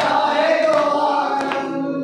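A group of men chanting a noha in unison, with sharp hand slaps of matam (chest-beating) keeping time roughly every three-quarters of a second.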